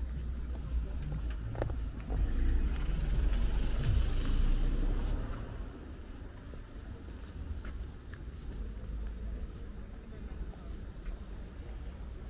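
A car passing on the street, rising about two seconds in and fading after about five seconds, over a steady low rumble of traffic and wind on the microphone.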